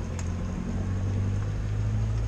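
Diesel engine of a concrete pump trailer idling steadily, a low even hum, with one light click just after the start.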